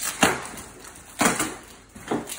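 A small cardboard parcel being torn open by hand: two short, loud ripping noises about a second apart.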